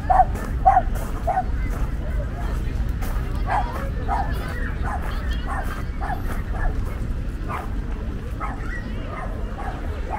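A small dog yapping in quick runs of short barks, two or three a second: one bout at the start, a longer one from about three and a half seconds in, then a few single barks near the end. A steady low rumble lies underneath.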